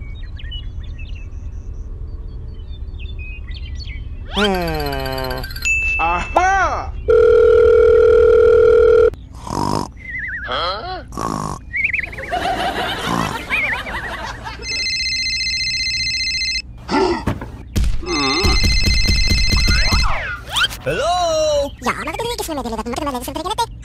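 Edited cartoon soundtrack: squeaky, sped-up gibberish character voices and comic sound effects over a steady low hum, with falling whistle-like glides, a long steady beep, and a phone ringtone that sounds twice in the second half.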